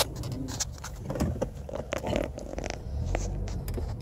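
Low cabin rumble of a 2010 Ford Fusion backing up slowly, with a sharp click right at the start and scattered light clicks and rustles.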